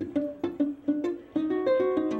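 Solo acoustic ukulele played fingerstyle: a quick run of single plucked notes, then from about halfway several notes ringing together.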